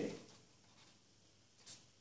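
Faint scratching of a pen writing on a sheet of paper, with one short, sharper stroke near the end.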